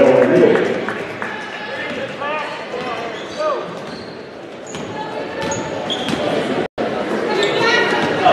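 A basketball being dribbled and sneakers squeaking on a hardwood gym floor, heard under the voices of a crowd in an echoing gym. The crowd is loudest at the start and again near the end.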